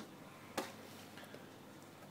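Quiet room noise with one faint, sharp click about half a second in.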